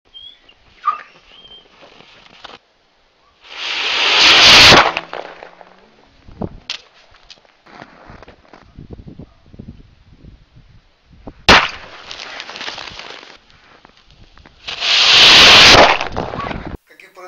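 Model rocket motors firing at launch: a loud hissing rush about a second long about 4 s in, a sharp crack followed by a fading hiss later on, and another loud hissing rush near the end.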